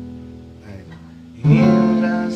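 Acoustic guitar: a strummed chord rings and fades away, then a new chord is strummed about one and a half seconds in and rings on.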